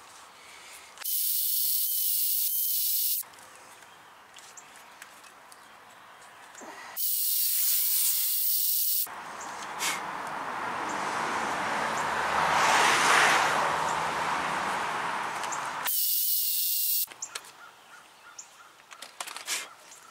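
Cordless drill spinning a composite polishing wheel against the pad contact surfaces of a brake caliper bracket, cleaning the rust off them. It runs in three short bursts with a high motor whine, and in between there is a longer stretch of abrasive hissing that swells and fades.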